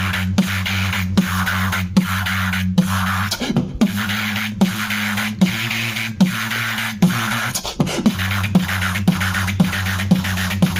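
Solo human beatboxing: sharp vocal drum strokes at about two and a half a second over a sustained, humming low vocal bass line, with breathy hissing sounds between the hits.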